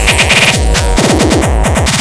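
Hardcore gabba track at 140 BPM, built in FastTracker II from 8-bit samples, playing loudly. It has a fast run of bass drum hits, each falling in pitch, packed closely together under busy high percussion.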